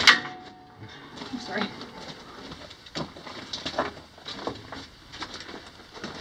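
A sharp metallic clank with a brief ring as a steel-framed chain-link security door is swung open, followed by scattered soft footsteps and knocks on the mine tunnel floor.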